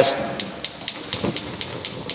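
Gas cooktop's electric spark igniter clicking steadily, about four clicks a second, as a burner knob is turned to light the burner.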